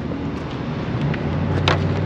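Motor vehicle traffic: a steady rush of road noise with a low engine hum that swells from about halfway through, as a car draws near.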